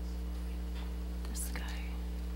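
A steady low hum made of several constant tones, with faint whispering voices in the background.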